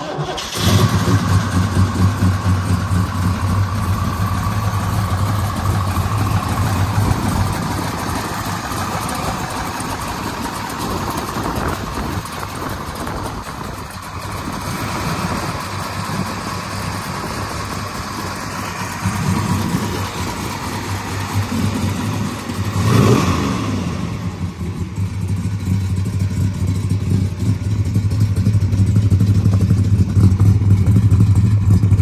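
1970 Chevrolet Chevelle SS big-block V8 cold-starting right at the beginning and settling into a steady, loud idle. About three quarters of the way through, one quick blip of the throttle rises and falls, then the idle carries on and grows a little louder near the end.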